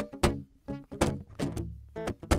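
Acoustic guitar strummed hard and percussively in a steady rhythm: sharp struck hits on the strings, each followed by ringing chords.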